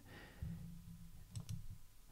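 A few faint, short clicks about one and a half seconds in, over a faint low hum in the first second.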